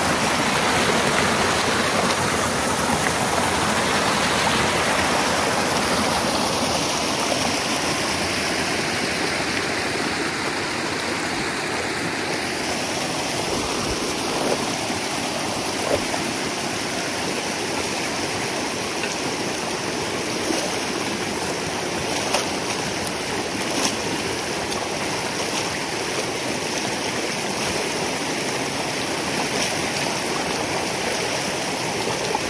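Water from a beaver pond rushing and gurgling steadily through a breach in a peat beaver dam, a little stronger in the first few seconds. A few short sharp sounds stand out over it partway through.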